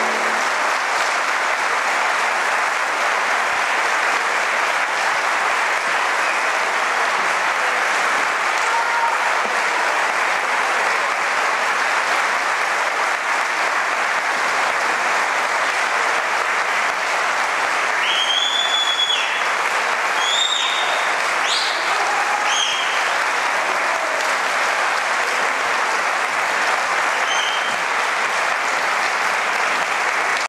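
Theatre audience applauding steadily, starting just as the music ends. A few short high whistle-like notes cut through the clapping about two-thirds of the way in.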